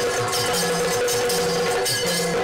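Yakshagana ensemble music: a barrel drum beats a quick rhythm of strokes that drop in pitch, over a steady held drone, with bright metallic ringing above.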